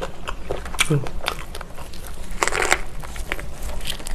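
Close-miked mouth sounds of a person biting and chewing a thick gimbap roll of seaweed, rice, pork belly and a whole green chili: wet clicks and smacks, with a louder crunch about two and a half seconds in. A short closed-mouth hum about a second in.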